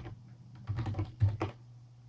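Computer keyboard being typed on: two short runs of key clicks, the first about two-thirds of a second in and the second about a second and a quarter in, over a low steady hum.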